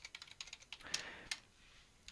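Typing on a computer keyboard: a quick run of faint keystrokes, with two louder key presses about a second in, then the typing stops.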